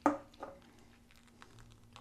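A quiet room with faint, scattered small clicks and rustles after a short spoken word at the start.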